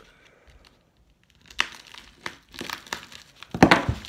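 Plastic mailer bag crinkling as it is cut and torn open with a blade. It is quiet for the first second, then come scattered crinkles and scrapes, with the loudest rip near the end.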